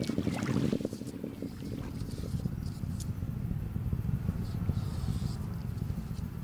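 Falcon 9 first stage's nine Merlin engines heard from the ground during ascent: a low, steady rumble with a fine crackle.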